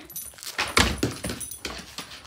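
A goldendoodle scrambling on a hardwood floor to catch a thrown toy: a run of quick clicks and knocks, loudest about a second in.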